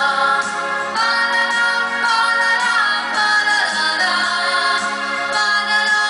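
A woman singing a Polish pop song with electronic keyboard accompaniment, holding long notes that slide in pitch.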